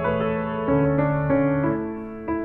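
Soft piano music, with single notes and chords changing every half second or so.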